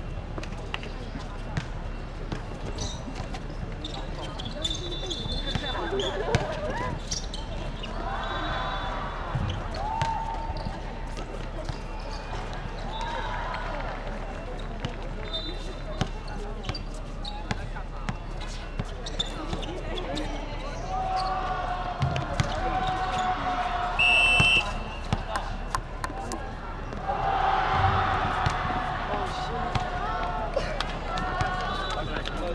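A basketball bouncing on an outdoor court during a game, heard as many short sharp knocks, with players' voices calling out across the court. There are short high squeaks and a louder stretch of voices near the end.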